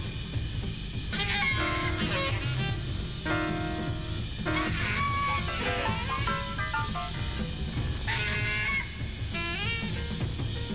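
Free improvised jazz from a reeds, piano and drums trio. A busy drum kit with cymbals plays throughout, under short held reed-instrument notes and quick rising pitch glides, the strongest glides near the end.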